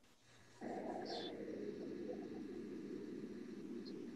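Steady low hiss of background noise on an open audio line. It cuts in about half a second in after a brief dropout to silence.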